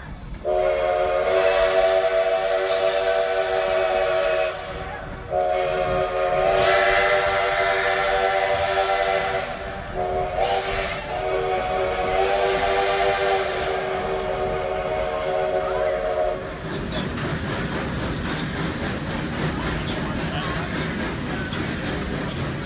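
Steam locomotive's chime whistle sounding three long, loud blasts of several tones at once, the first two about five seconds each and the last about six. Then the whistle stops and the steady hiss and rumble of the moving train remain.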